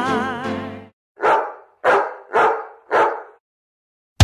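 A dog barking four times in quick succession, about half a second apart, just after a song fades out.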